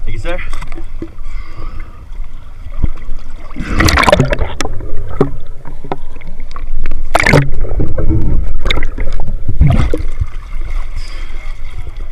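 Water sloshing and splashing against a camera as it dips under the surface and comes back out, over a steady low rumble, with three loud splashes about four, seven and ten seconds in.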